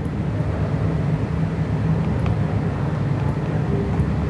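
Steady low background rumble, even throughout, with a few faint ticks.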